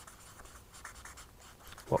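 Marker pen writing on a paper flip-chart pad: a quiet run of short scratchy strokes as a word is lettered.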